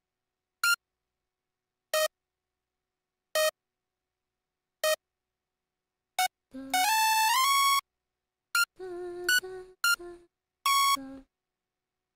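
Synth lead notes from a DAW piano roll: four short single notes about a second and a half apart, then a brief melodic phrase of several notes, one stepping up in pitch, stopping about a second before the end.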